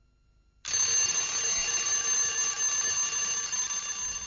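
Alarm clock ringing, shrill and continuous, starting suddenly about half a second in.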